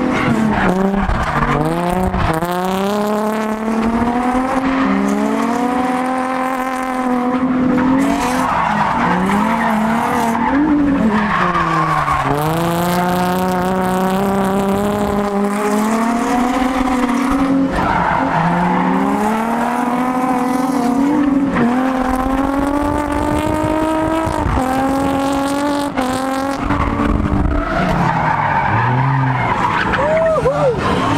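Nissan 350Z drift car's engine revving hard during a tandem drift, heard from inside the cabin, with the tyres squealing and skidding. The revs climb and fall again and again, dropping deeply several times as the car changes direction.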